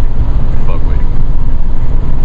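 Loud, steady low rumble of road and wind noise inside a car cabin moving at highway speed.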